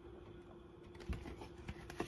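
Faint handling sounds of vinyl record sleeves: light taps and rustles of card and plastic, with a soft knock about a second in, over a faint steady hum.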